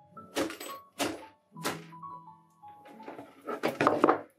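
Wooden mallet striking a carbon-fibre-covered 3D-printed PLA enclosure: several sharp knocks, three in the first two seconds and more near the end. The blows crack the PLA underneath while the carbon-fibre skin holds. Background music plays under the knocks.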